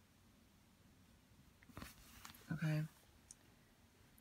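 Quiet room tone broken by a couple of faint clicks and a brief rustle as a smartphone is handled, about two seconds in and again near the end, with a woman's short spoken "Okay".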